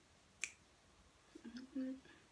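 Mouth sounds of a person eating toilet paper dipped in water: a single sharp click about half a second in, then a short, low hummed 'mm' near the end.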